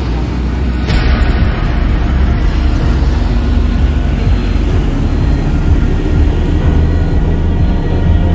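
Steady low road and engine rumble of a moving vehicle, heard from on board, with a brief click about a second in.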